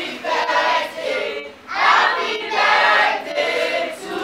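A group of voices, children among them, singing together in phrases, with a brief pause about a second and a half in.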